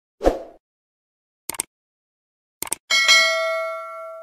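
Sound effects of a subscribe-button animation. A short thump comes first, then a click about a second and a half in and two quick clicks near three seconds. Last comes a bell-like ding that rings on in several steady tones and fades.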